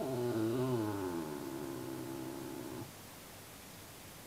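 Miniature schnauzer howling while left alone in its crate: one long wavering howl of nearly three seconds, its pitch sliding down after the first second, then stopping abruptly.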